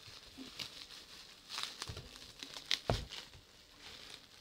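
Plastic bubble wrap crinkling and rustling as a wrapped package is handled and pulled from a cardboard box, with bursts of sharper crackles in the middle and a short knock a little before the end.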